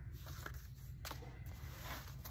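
Soft rustling and sliding of paper as the cards and pages of a handmade paper journal are handled, with one light tap about a second in.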